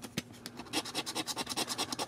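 A coin scraping the latex coating off a paper scratch-off lottery ticket in quick back-and-forth strokes, several a second.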